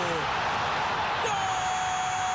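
Football stadium crowd noise from match footage, an even roar of the crowd. A falling tone fades out just after the start, and a steady tone comes in a little over a second in.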